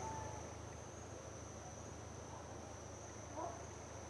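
Steady, high-pitched insect trill as outdoor ambience, with a couple of faint short chirps, one at the start and one about three and a half seconds in.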